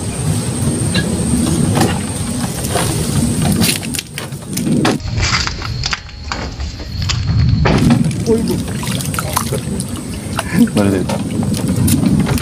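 Indistinct voices of people talking over a steady low rumble, with a splash of water near the end as a hooked fish thrashes at the surface.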